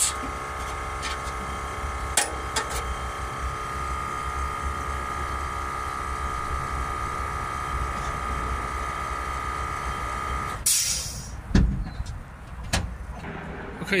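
A machine running steadily with a low rumble under a steady tone, cutting off suddenly about ten and a half seconds in; a few sharp knocks follow.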